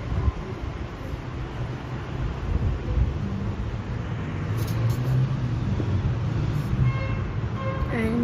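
Steady low rumble of background noise, with no clear events in it.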